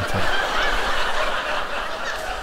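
A large audience laughing together at a joke. The laughter swells within the first half-second and then slowly tapers off.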